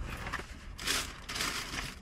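Rustling of a takeout food bag and container being rummaged through, in two short bursts: one about a second in, a longer one just after.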